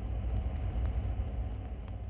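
A low, steady rumble with a few faint clicks through it.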